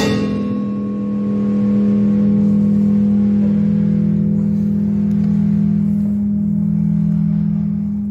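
Electric guitar through its amplifier holding one steady low note after the band's final hit, ringing on with hardly any fade.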